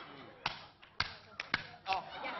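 Five sharp knocks or taps at uneven spacing, the last three closer together.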